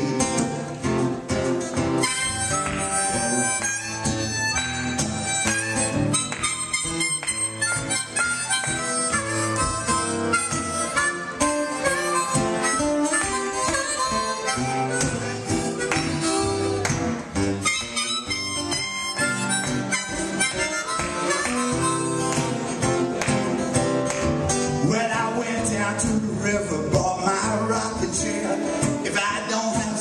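Blues harmonica solo played into a vocal microphone over acoustic guitar accompaniment.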